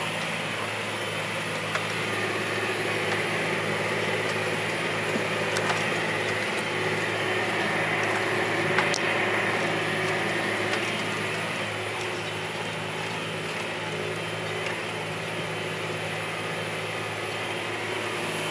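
John Deere 8335 tractor's diesel engine running steadily under load while pulling a cultivator, heard from inside the cab. A few faint clicks sound over it.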